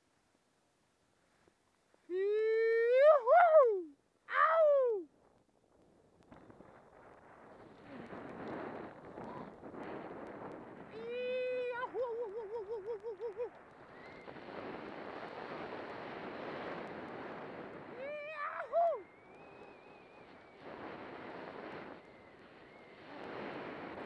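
High, drawn-out whoops from a snowboarder: two loud ones close together a couple of seconds in, a wavering one about midway and a shorter one later. Under them, the steady hiss of the board sliding over snow, with wind on the microphone, begins a few seconds in.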